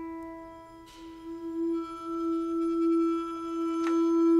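Contemporary chamber music: a single long held instrumental note that slowly swells in loudness, wavering slightly as it grows.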